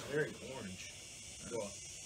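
Brief murmured vocal sounds from a man: a short one near the start and another about a second and a half in, over a steady high-pitched hiss.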